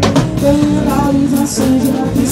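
A small live band playing: acoustic guitar and electric bass over a drum kit, with sharp drum and cymbal hits among the held notes.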